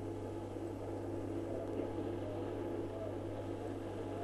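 Steady low hum and hiss on an old television broadcast audio recording, with no speech.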